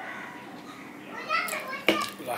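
Children's voices talking and playing in the background, with one sharp knock near the end.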